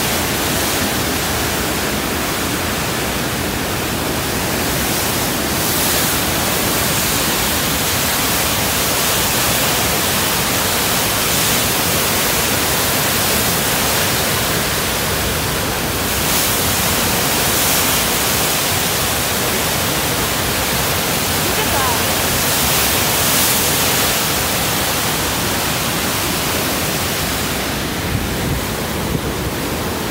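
Flood-swollen Ottawa River rushing through the rapids at Chaudière Falls: a loud, steady rush of churning water that swells slightly now and then, the water running high from heavy rains.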